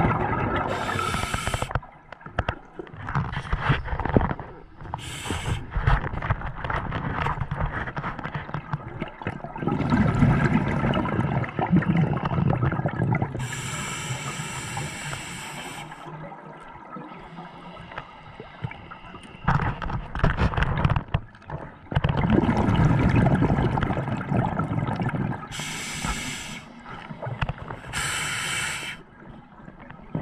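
Scuba diver breathing through a regulator underwater: short hissing inhalations and longer stretches of gurgling exhaust bubbles, a breath every several seconds.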